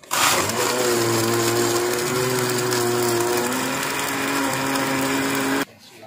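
Electric countertop blender running at full speed with liquid in the jar, switched on abruptly and cut off after about five and a half seconds. Its motor hum drops a little in pitch about halfway through.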